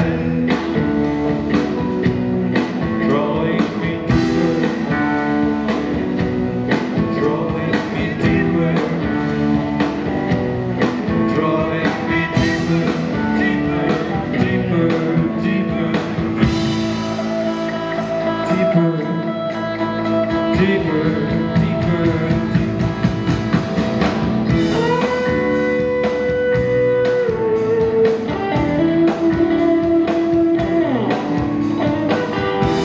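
Live rock band with electric guitars, bass, drums and keyboard playing an instrumental break between verses, over a steady beat. A long held note stands out about 25 seconds in.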